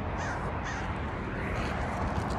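A bird calling a few short times over steady outdoor background noise.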